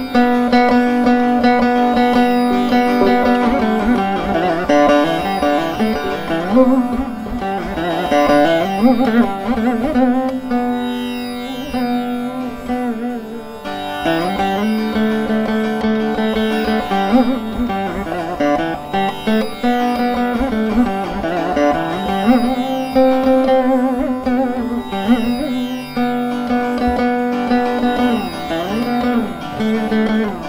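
Saraswati veena playing a Carnatic melody: plucked notes held and bent, with the pitch sliding and wavering between them in gamaka ornaments.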